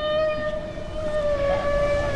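A humpback whale call: one long, steady, pitched moan held throughout, over a low rumble.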